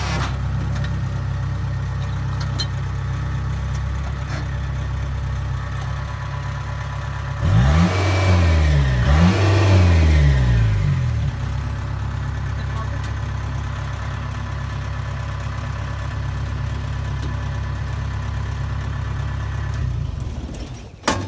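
Kubota Harvest King combine harvester's diesel engine running steadily. About halfway through it is revved up and let back down twice over a few seconds, then settles back to its steady run.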